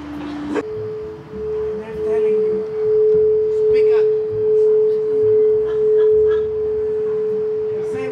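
Crystal singing bowl played with a wooden mallet, ringing one steady pure tone that builds over the first few seconds and then swells and fades in slow waves. A lower bowl's tone cuts off about half a second in, as this one starts.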